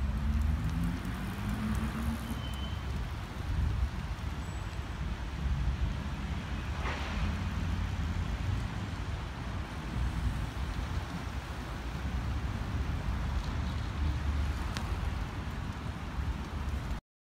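Steady road-traffic rumble. A vehicle's engine rises in pitch in the first two seconds, and something passes with a brief rush about seven seconds in.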